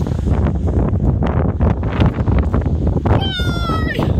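Wind buffeting the microphone, with a single high squeal near the end lasting under a second and falling slightly in pitch.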